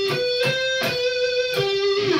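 Electric guitar playing a lead phrase of held single notes, a new note picked every third to half second, stepping up and then back down between neighbouring pitches: the back-and-forth "flip-flopping" part of a melodic sweep arpeggio exercise.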